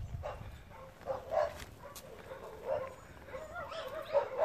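A dog whining and yipping: a few short, faint high-pitched cries, then a wavering whine near the end.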